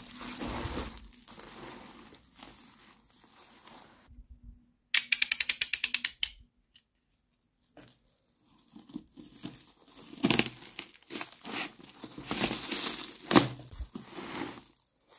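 Plastic cling film crinkling as hands handle a film-wrapped cardboard box. About five seconds in comes a quick run of about a dozen clicks, about ten a second: a snap-off utility knife's blade being slid out. After a short gap comes the crinkling and tearing of the film as the knife cuts into it, with a couple of sharper, louder pops.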